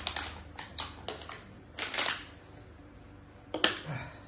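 Crickets chirping in a steady high trill, with irregular sharp clicks and rustles of a plastic takeaway food box being handled during eating.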